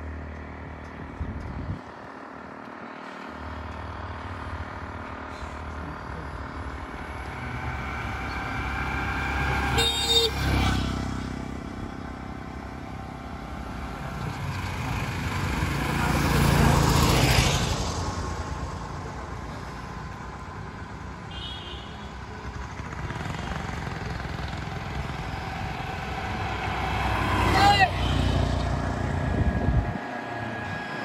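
Small-engined road traffic passing close by: motorcycles and three-wheeled auto-rickshaws, their engines swelling and fading as each goes past. The loudest pass comes a little past the middle, with short horn toots, one sharp one near the end.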